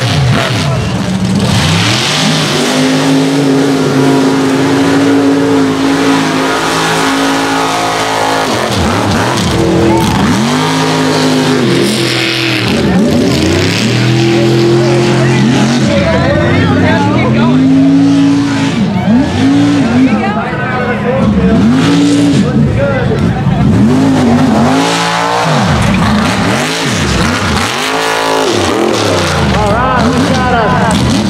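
Mega mud truck engines revving hard as the trucks race through the mud, the pitch held high for a few seconds and then swinging up and down again and again.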